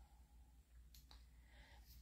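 Near silence: room tone, with a faint click or two about halfway through.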